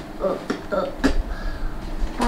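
A person's voice making short wordless sounds, with a sharp click about a second in.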